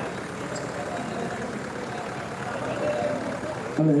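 Diesel tractor engines idling steadily under the general din of a large outdoor crowd, with no sudden events.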